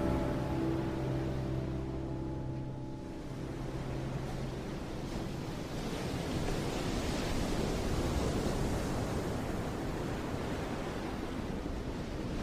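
Sea surf washing on a sandy beach, a steady rushing that swells about midway. A low held music chord fades out over the first few seconds.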